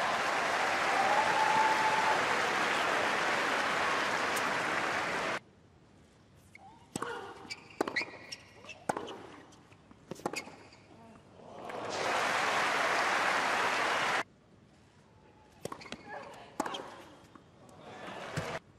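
Crowd applause in a tennis stadium that cuts off suddenly, then a rally: a tennis ball struck by rackets and bouncing on a hard court, a sharp crack every second or so. Another burst of applause stops abruptly, and more ball strikes follow near the end.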